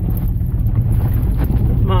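Pickup truck driving over a rough hay field, heard from inside the cab: a steady low rumble with wind buffeting the microphone.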